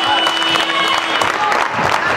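Sports-hall final buzzer sounding as one steady tone, cutting off about a second in, over applause, claps and shouting voices as a handball game ends.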